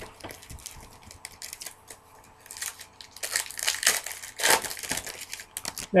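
Foil wrapper of a baseball card pack being torn open and crinkled by hand, in irregular crackly bursts that grow louder and denser about halfway through.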